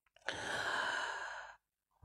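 A man's single long audible breath close to the microphone, lasting just over a second, taken in a pause between spoken sentences.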